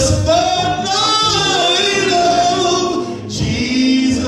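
A man singing gospel into a microphone, holding long, drawn-out notes that bend in pitch.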